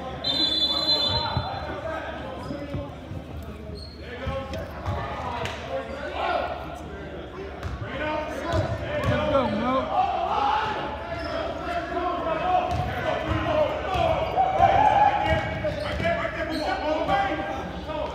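A basketball being dribbled and bounced on a gym court, mixed with players and spectators talking and calling out in an echoing hall. A shrill steady tone sounds for about two seconds near the start.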